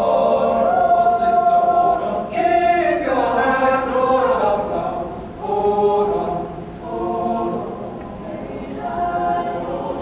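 Mixed choir of male and female voices singing held chords that change phrase by phrase, with short breaks between phrases about five and a half and six and a half seconds in.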